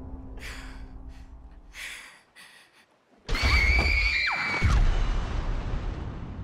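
Horror trailer sound design: a low drone fades under a few short, breathy gasps, then after a moment of near silence a loud, shrill shriek cuts in and is held for about a second before bending downward, and a deep boom hits as it ends and fades out.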